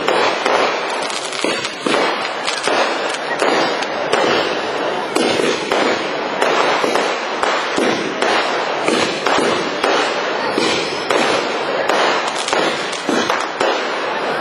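Aerial fireworks bursting in quick succession: a continuous barrage of overlapping bangs and crackles with no break.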